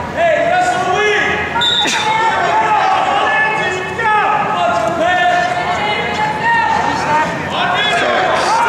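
Coaches and spectators shouting at the wrestlers in a gym, with thuds from the wrestlers' footwork and hand-fighting on the mat and a sharp knock about two seconds in.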